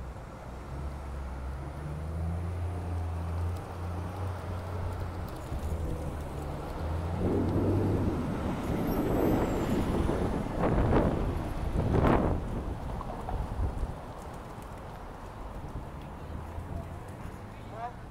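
City street traffic: a low engine hum for the first half, then passing vehicles swelling in level around ten to twelve seconds in, before settling back to a steady traffic background.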